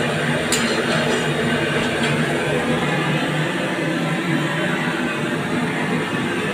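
A steady low hum and hiss, with one light clink about half a second in.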